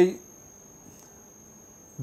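Quiet room tone in a pause of a man's speech, with a faint steady high-pitched whine running under it; the end of a spoken word is heard at the very start.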